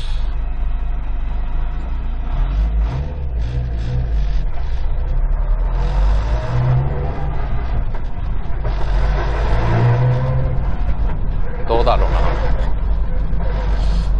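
Subaru WRX STI's EJ20 turbocharged flat-four engine heard from inside the cabin while driving, its revs rising and dropping through manual gear changes.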